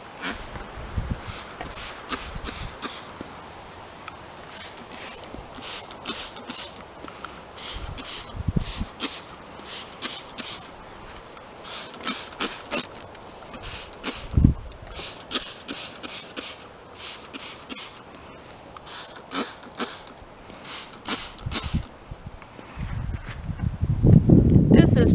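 Trigger spray bottle squirting water, many short sprays in quick runs of two to four with pauses between. A single low thump comes about halfway through.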